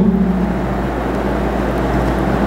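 Steady low background hum and hiss of room noise, unchanging through the pause.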